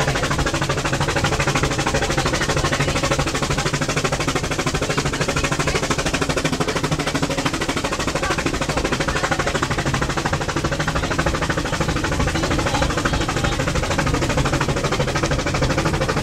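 Brienzer Rothorn rack railway train climbing, a fast, steady chugging and clatter of about five to six beats a second.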